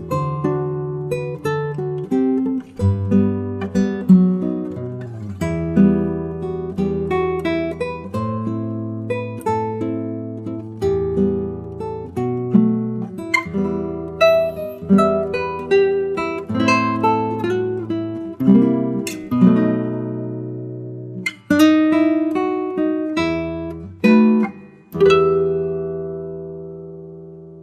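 Acoustic guitar playing a slow instrumental passage of plucked chords over bass notes. It closes on a last chord that rings out and fades near the end.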